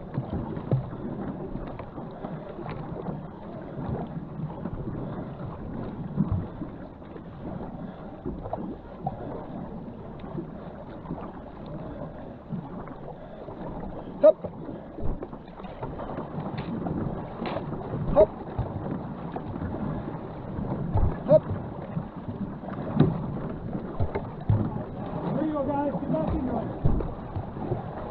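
Water splashing and rushing along a racing canoe's hull as it is paddled hard, with scattered short knocks and thumps.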